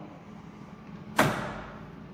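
Emergency-stop button on a CNC router's control cabinet pressed: a single sharp clack about a second in, fading quickly over a steady low hum.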